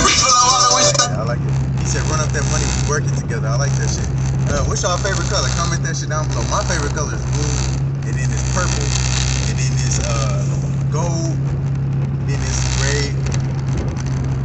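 Steady low drone of a car's engine and road noise heard inside the cabin while driving, with a voice over it. Music playing at the start cuts out about a second in.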